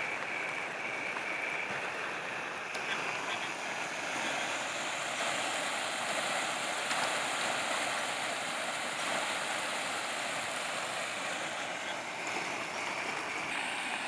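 Muddy floodwater rushing over and through a small stone culvert bridge, a steady even rush of water.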